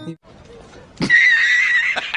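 Horse whinny sound effect: one high, quavering call about a second long, starting about a second in.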